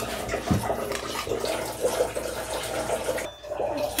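Metal spoon scooping thick red seasoning sauce out of a stainless steel bowl and onto chopped potatoes and vegetables in a frying pan: wet scraping and spooning.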